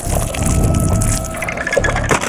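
Horror-trailer sound design: a loud rushing, hissing noise with a low rumble beneath, starting suddenly.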